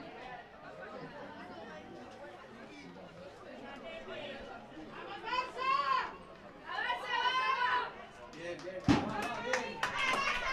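Voices at a youth football pitch: a background murmur of chatter, then two loud shouted calls about halfway through, and one sharp thud near the end.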